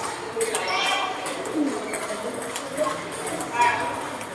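Table-tennis balls clicking off paddles and tables at several tables at once, in quick irregular strikes, over the chatter of players.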